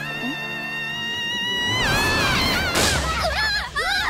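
A high-pitched cry held steady for nearly two seconds, then dropping in pitch into a rush of noise, followed by wavering cries near the end, over background music.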